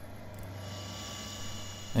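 Steady electrical hum with a faint high-pitched whine that grows a little stronger about half a second in.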